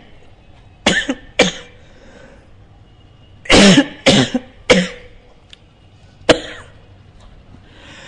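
A man coughing in short, sharp coughs: two about a second in, three more around four seconds, and a last one just past six seconds.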